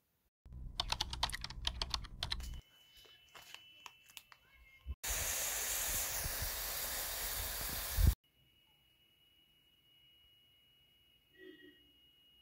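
Quick clicks for about two seconds, then a loud, even hiss of water boiling around instant noodles in a pot for about three seconds, cut off abruptly.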